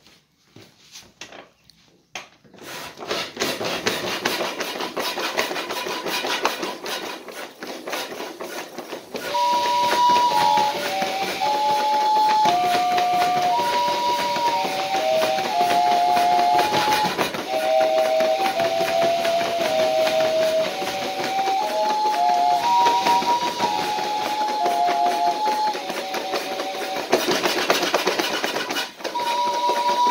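Air-mattress bellows pumping air into a cardboard pipe organ's balloon, a hissing rush with clatter, then about nine seconds in the paper pipe organ starts sounding a slow chorale, held notes usually two at a time stepping from pitch to pitch over the continuing air noise.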